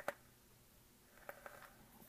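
Near silence, with a few faint clicks of a brass tube mod being handled: a cluster right at the start and a few more a little past the middle.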